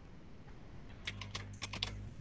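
Computer keyboard typing: a quick run of about eight keystrokes beginning about a second in, faint.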